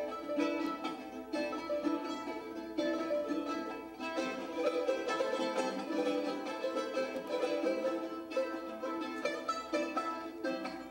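A charango and a second small plucked string instrument playing an Andean tune together in a duet, a steady stream of quick plucked and strummed notes.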